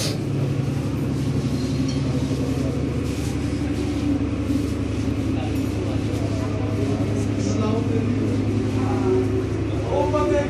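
Indistinct voices of people nearby over a loud, steady low hum.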